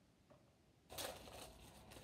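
Packaging crinkling and tearing by hand as a small toy is unwrapped, starting suddenly about a second in.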